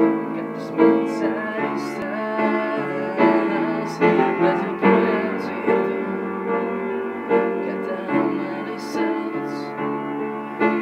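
Upright piano played by hand: a slow, steady accompaniment with chords struck about every 0.8 seconds under a melody.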